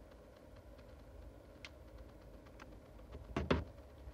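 Handling noise from a smartphone and its USB cable as the cable is plugged in: scattered faint clicks, then two short knocks close together a little over three seconds in.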